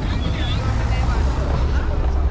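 Street ambience: a steady low rumble of road traffic, with snatches of passers-by talking.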